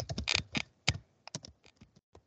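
Typing on a computer keyboard: a quick run of keystrokes, louder and closer together in the first second, then sparser and fainter.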